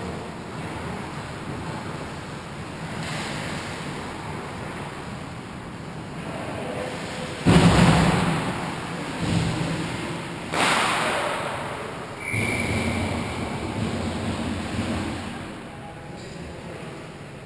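Ice hockey skate blades scraping the ice close by in four sudden strokes in the second half, each fading over about a second, over low steady rink noise.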